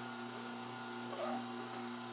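Horizontal masticating juicer's electric motor running with a steady low hum.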